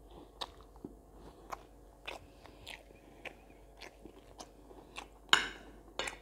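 A person chewing a mouthful of yellow rice and chicken close to the microphone, heard as a run of short wet mouth clicks and smacks. A louder, sharper click comes near the end.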